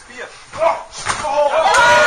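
Wrestlers' bodies slamming down onto the stage mat about a second in, followed by a loud, drawn-out shout.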